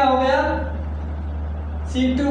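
A man's voice speaking briefly at the start, then a pause, over a steady low hum.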